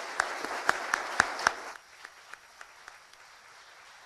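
Audience applause at the end of a lecture, dense at first, then dropping off abruptly a little under two seconds in to a few scattered claps.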